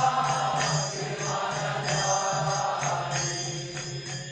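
Devotional mantra chanting with music: voices chanting over a steady low drone, with occasional percussion strikes.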